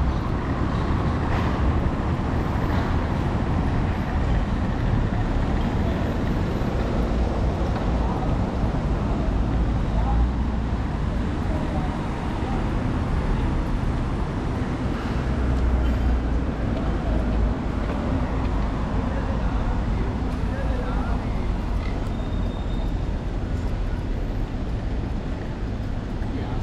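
City street ambience on a pedestrian boulevard: a steady hum of distant road traffic with indistinct voices of passers-by and occasional low rumbles.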